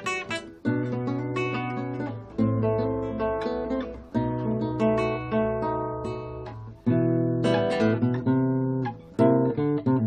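Solo acoustic guitar playing a slow composed piece: chords and single notes are plucked or strummed and left to ring over sustained bass notes, with a fresh chord struck every one to three seconds.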